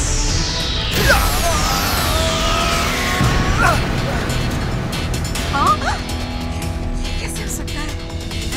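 Animated-cartoon action soundtrack: background score with long descending whoosh effects over the first three seconds.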